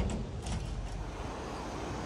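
Low, steady vehicle rumble.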